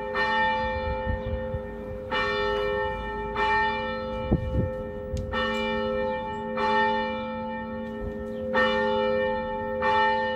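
A church bell tolling, struck about every one to two seconds, each stroke ringing on into the next. There is a short low thump about four seconds in.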